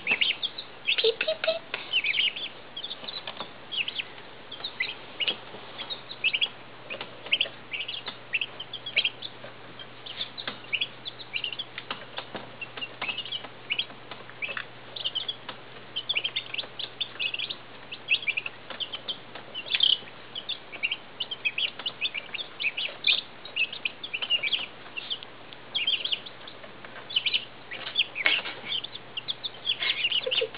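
A brood of two-day-old Midget White turkey poults and five-day-old Icelandic chicks peeping: many short, high peeps, overlapping and constant.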